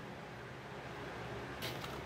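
Rotary cutter rolling along an acrylic ruler through a quilted rug's layers of cotton fabric, batting and backing, a faint steady cutting sound that grows a little louder near the end.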